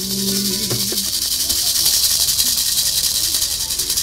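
Hand-held calabash gourd rattle shaken continuously in a fast, even rhythm, a dense dry hiss of seeds against the shell. A low voice trails off in the first second.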